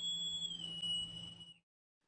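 Transition sound effect under a title card: a steady, whistle-like high tone over a low hum. The tone bends up slightly and back near the start, then cuts off about a second and a half in.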